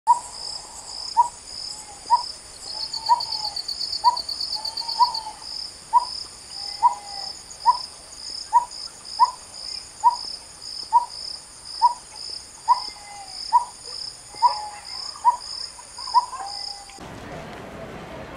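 A bird giving a short, sharp call about once a second over a steady high-pitched insect drone, with a pulsing chirp about twice a second; it all cuts off abruptly near the end.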